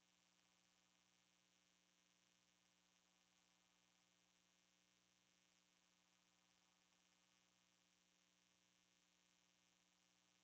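Near silence: only a faint, steady hum with a little hiss.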